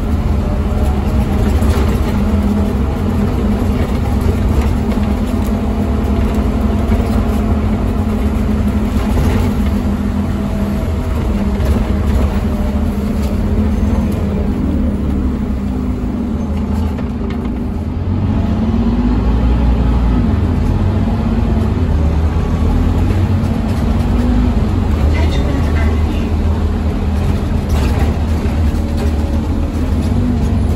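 Diesel engine of a Scania OmniCity double-decker bus heard from inside the saloon, droning steadily under way with tyre noise from the wet road. A little over halfway through it eases off briefly, then the engine note picks up and rises again as the bus accelerates.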